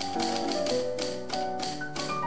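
Typewriter key-click sound effect, a rapid run of clicks about six a second that keeps pace with on-screen text being typed out, over background music with sustained keyboard tones.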